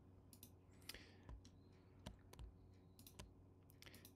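Near silence with about ten faint, irregularly spaced computer mouse clicks over a faint steady electrical hum.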